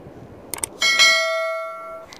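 A sound effect of a couple of quick mouse clicks, followed by a single bell ding that rings with several clear tones and fades away over about a second. This is the stock click-and-bell effect of a YouTube subscribe-button animation.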